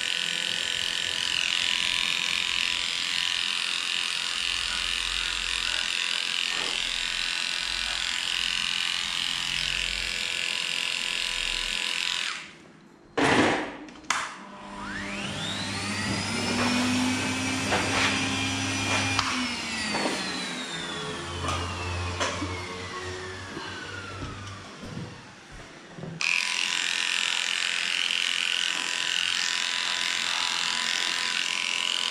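Cordless dog grooming clippers running steadily as they clip a cocker spaniel's matted hind leg. They stop about twelve seconds in, a sharp knock follows, then another motor whine rises in pitch, holds and slowly winds down over about ten seconds before the clippers run again near the end.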